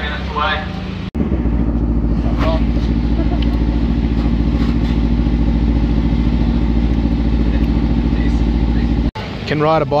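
An engine running steadily at a low idle for about eight seconds, starting and stopping abruptly, with a few words of speech just before and after it.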